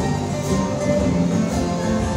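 Live string-band music for contra dancing: acoustic guitar and other instruments playing a steady dance tune.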